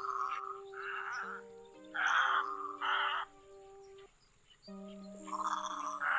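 Harsh, croaking egret calls, each about half a second long, about four in the first three seconds and more from about five seconds in, over background music with long held low notes.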